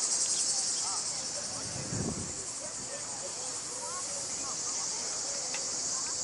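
A chorus of cicadas buzzing shrilly in the trees, dense and unbroken.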